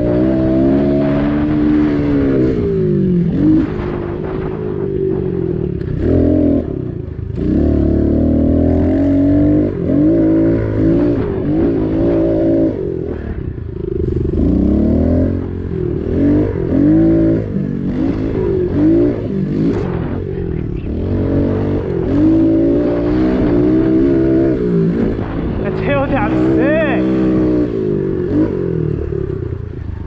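Pit bike engine revving hard under load, its pitch climbing and dropping over and over as the rider rolls on and off the throttle and shifts while riding a dirt track.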